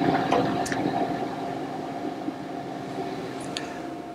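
Optical comparator's work stage being traversed to bring the crosshairs onto the part's edge: a steady mechanical rumble with a hum, loudest at first and fading over a few seconds, with a few light clicks.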